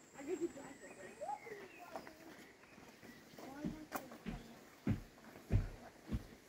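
Faint voices of children and adults talking at a distance, with no clear words. In the second half, soft low thumps come about every half second.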